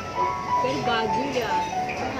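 Grand piano played live, a melody of held notes, with people's voices talking over it.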